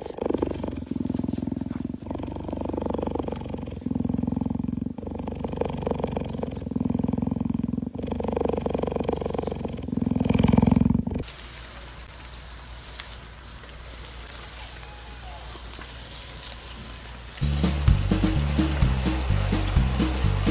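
A cheetah purring in low, pulsing stretches a second or two long, breath after breath, for about the first eleven seconds, then a quieter hiss. Music with a steady beat comes in near the end.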